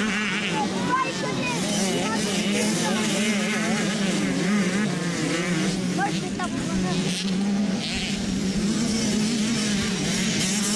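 Several motocross bike engines revving up and down as they race around the track, their pitches wavering and overlapping over a steady low drone.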